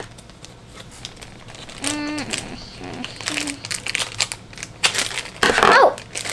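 Thin clear plastic bag crinkling and crackling in small hands as it is snipped open with scissors and a toy figure is worked out of it.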